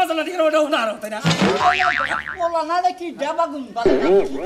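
Cartoon 'boing' spring sound effects, swooping up and down in pitch again and again, with a long wobbling one from about a second in, mixed with voices.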